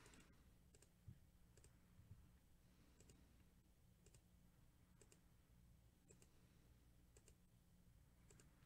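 Faint computer mouse clicks, about one a second, over near silence: the randomize button being clicked again and again.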